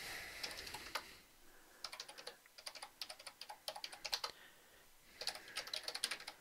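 Quiet typing on a computer keyboard: runs of keystrokes with short pauses between them.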